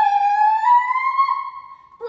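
A girl's voice holding one long, high vocal note that slowly rises in pitch, then fades away near the end.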